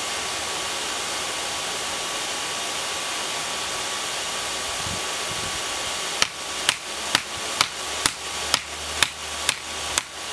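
Hand hammer striking a red-hot railroad spike laid on a granite-rock anvil, starting about six seconds in at about two sharp blows a second, nine in all. Under it a steady hiss from the hair dryer blowing air into the forge.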